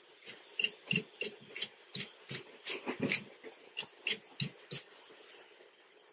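About a dozen short scraping strokes on a tied salmon fly, about three a second, stopping near the end, as the excess wax is cleaned off it.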